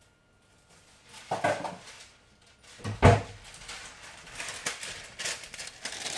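Wax paper being handled and rustled, with a sharp knock about three seconds in, then steady crinkling that grows louder near the end.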